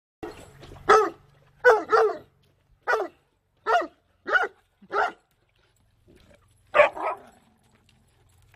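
Leonberger barking in play: about nine loud barks, singly and in quick pairs, with a pause of over a second before a last pair near the end.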